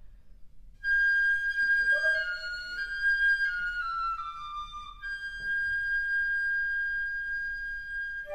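Flute ensemble playing: a single high flute enters about a second in and falls in small steps, with a lower flute note sounding briefly beneath it. The high flute then holds one long high note.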